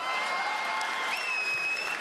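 Audience applauding a punchline, with a long high whistle held over the clapping that steps up in pitch about halfway through.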